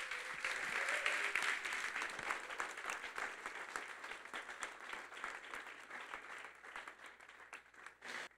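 Congregation applauding, loudest at first and gradually dying away over several seconds.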